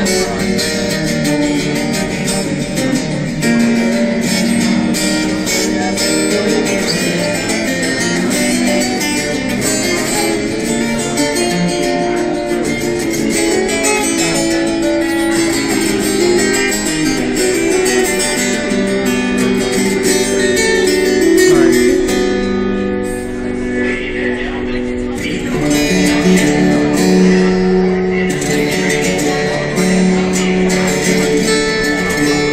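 Solo guitar-like plucked string instrument playing a lively instrumental tune as a steady run of plucked notes, with a brief softer passage a little past two-thirds of the way in.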